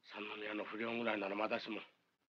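Speech only: a man speaking one continuous line of Japanese film dialogue.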